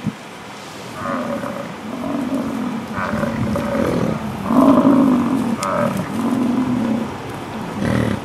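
American bison grunting, a series of about five drawn-out calls close by, each under a second long. A short knock comes at the very start.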